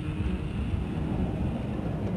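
Steady rumble of an aircraft engine.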